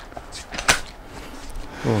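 UPPAbaby Vista stroller's toddler seat being set onto its frame adapters: light plastic-and-metal handling noise with one sharp click about two-thirds of a second in.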